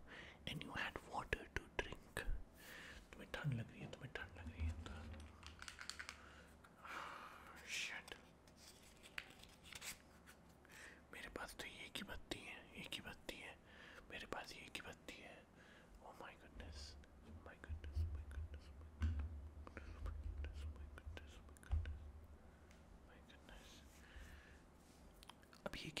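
Soft whispering with many small clicks and handling noises. Low rumbles come about four seconds in and again past the middle.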